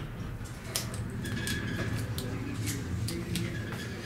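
Elevator cab in motion: a steady low hum with light clicks about every half second and a faint short tone partway through.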